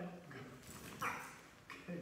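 A short, sharp bark or yip from a six-month-old goldendoodle puppy about a second in, with a man's voice briefly at the start.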